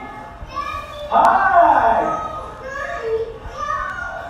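Children's excited, high voices, with a loud shriek about a second in followed by shorter calls: kids reacting with surprise and delight as their mother arrives home, played back over a hall's speakers.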